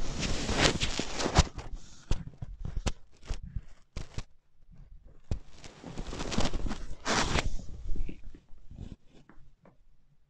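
Percussive hand massage (tapping technique) on a man's back and shoulders through a cotton T-shirt. There are two runs of rapid taps with fabric rustle, one in the first two seconds and one from about five seconds in, with scattered single taps between them, dying away near the end.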